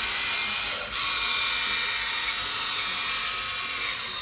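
Small electric gear motors of a Huina 1592 1:14-scale RC excavator whining steadily as they drive the boom and bucket, with a brief break about a second in when one motion stops and the next starts.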